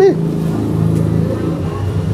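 An engine running steadily nearby, a low, even hum.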